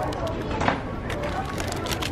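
Shop background noise with a faint voice, and a few short clicks and rustles of plastic-wrapped merchandise being handled on a shelf.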